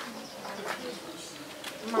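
Faint steady background hum, with a woman's voice starting right at the end.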